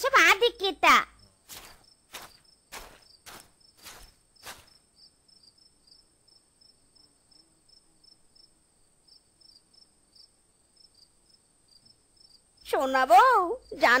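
Crickets chirping faintly in an even, steady pulse. In the first few seconds there are several short, sharp knocks. A voice speaks briefly at the start and again near the end.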